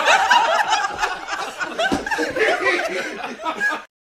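Laughter from several people at once, a dense mix of chuckles, cut off abruptly near the end.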